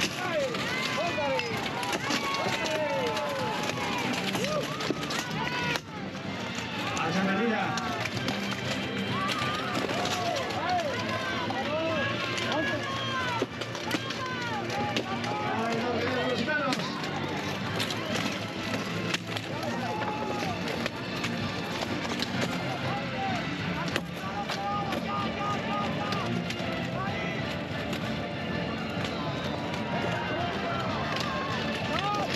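Shouting voices and cheering over a buhurt melee between fighters in steel plate armor, with a few sharp clanks of weapons striking armor, one of them about six seconds in.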